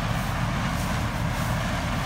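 Gleaner combine running while harvesting corn: a steady, even low rumble.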